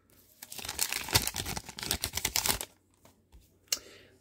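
Crinkling of a hockey card pack wrapper as the next pack's cards are pulled out of it, lasting about two seconds. A single sharp click follows near the end.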